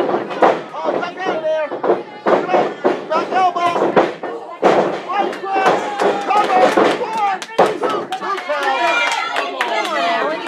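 Wrestlers' bodies and strikes landing in a wrestling ring, a string of sharp slaps and thuds spread through, over the shouting voices of a small crowd.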